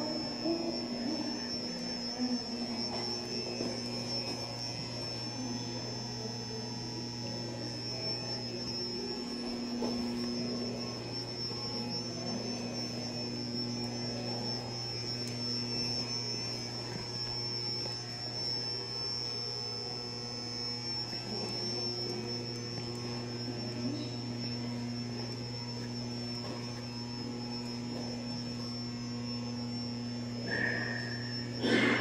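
Room tone: a steady low hum with a thin, high-pitched whine held above it, and faint scattered background sounds.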